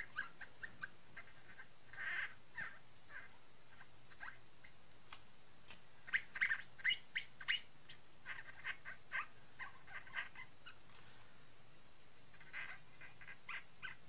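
Felt-tip marker squeaking on glossy cardstock as it is worked over the paper in short strokes: clusters of quick, light squeaks with pauses between, and a short break near the end before the squeaking resumes.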